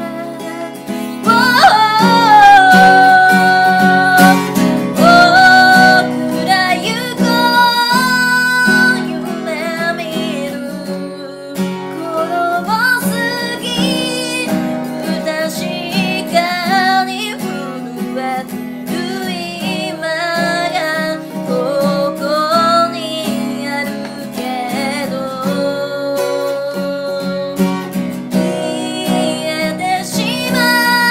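A woman singing a slow ballad with long held notes over her own strummed steel-string acoustic guitar.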